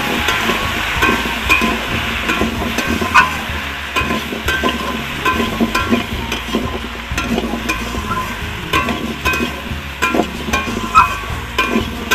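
A metal spatula stirring and scraping chunks of pumpkin and potato in a steel wok as they fry, with frequent short clinks and scrapes of metal on the steel pan over a light frying sizzle.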